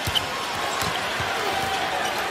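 Basketball being dribbled on a hardwood court, a few short thuds, over a steady murmur from the arena crowd. A sharp click comes right at the start.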